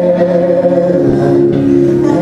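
Gospel praise singing: voices hold long, steady notes over a sustained keyboard chord, the harmony shifting about a second in.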